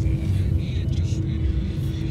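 Steady low rumble of a jet airliner's cabin in flight, with a steady hum over it.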